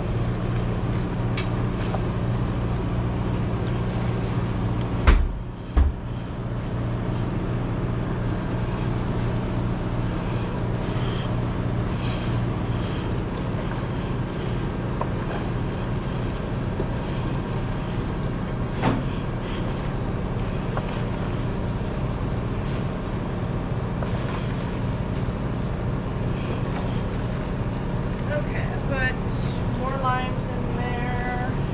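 A steady mechanical hum of kitchen machinery, with strong low tones, fills the room while gloved hands toss shredded meat in stainless steel pans. Two dull thumps come about five and six seconds in.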